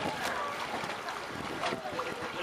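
Pool water sloshing and churning in an above-ground pool as a man wades through it carrying children on his back, with faint children's voices mixed in.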